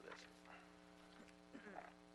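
Near silence: a steady low electrical hum on the microphone feed, with the faint tail of a spoken word at the start and a brief faint voice near the end.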